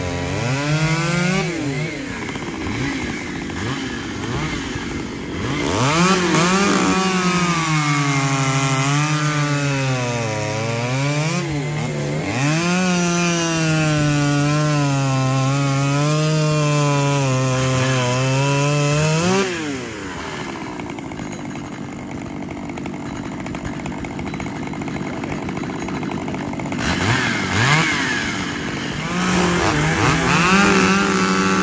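Two-stroke chainsaws running at full throttle while cutting through a log together, the engine pitch sagging and recovering again and again as the chains load in the wood. About twenty seconds in the loudest saw drops away, leaving a quieter saw sound, and near the end a saw revs up again.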